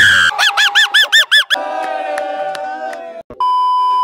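Edited intro sound effects. A shout cuts off just after the start, followed by a warbling effect of about five quick rising-and-falling chirps and a held tone. Just past three seconds in, a steady TV test-pattern beep begins and lasts about a second.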